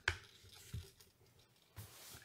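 Mostly quiet room with a short click at the start and a couple of faint soft knocks later on: handling noise of a hand-held camera on a shooting grip as it is carried off on a walk.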